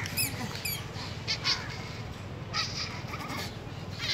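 Two short, high, falling squeaks from a small animal about half a second apart near the start, followed by light scuffing and rustling.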